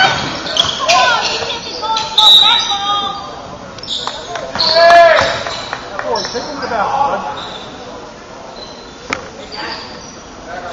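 Indoor basketball game on a hardwood court: a ball bouncing, sneakers squeaking, and players' voices echoing in a large gym. The sounds are busy at first and quieter after about seven seconds.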